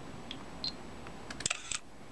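Samsung Galaxy Camera's shutter sound: a quick cluster of clicks about one and a half seconds in, after a faint short chirp.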